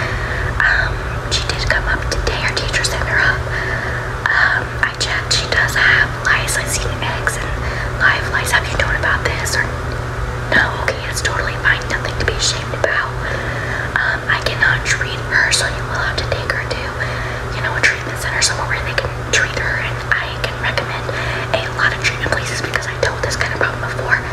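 A girl whispering close to the microphone, one long stretch of soft speech full of sharp hissing s-sounds, over a steady low hum.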